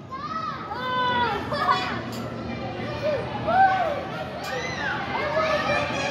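Children calling and shouting in high voices over a steady background din of kids at play.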